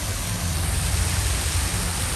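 Steady rush and splash of a fountain's water falling into its stone basin: an even hiss with a low rumble underneath.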